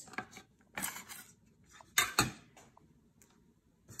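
Metal bench scraper cutting through the end of a braided challah dough and striking the stone countertop beneath: a soft knock about a second in, then two sharp clicks close together about two seconds in.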